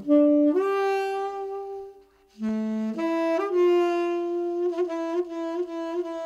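Solo saxophone playing a slow jazz melody of long held notes. It scoops up into a note about half a second in, breaks off briefly about two seconds in, then holds a long note with quick flutters near the end.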